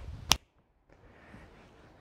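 A single finger snap, one sharp click about a third of a second in, followed by a faint soft hiss.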